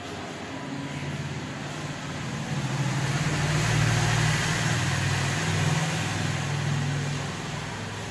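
A motor vehicle going by, its low engine sound swelling to a peak about halfway through and then fading.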